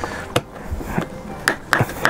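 Plastic pieces of a figure's display stand clicking and knocking as they are pushed together, with a few sharp clicks: one about a third of a second in and two close together near the end.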